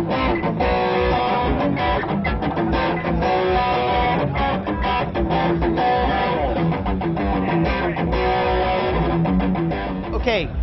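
Electric guitar played through a Hao Omega Drive 16 overdrive pedal, which runs at 16 volts, with its tone switch off, into an amp. Chords and single notes are picked without a break, giving an overdriven tone that is meant to sound like a tube amp head.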